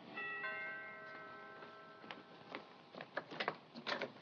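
A two-note door chime rings, its notes struck a fraction of a second apart and dying away over about two seconds, the signal that a visitor is at the front door. A few light clicks and taps follow near the end.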